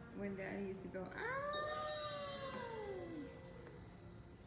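A long drawn-out cry, rising briefly and then sliding down in pitch over about two seconds.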